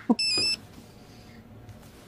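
A short electronic beep from a handheld phone, about half a second long, stepping in pitch partway through, followed by faint background.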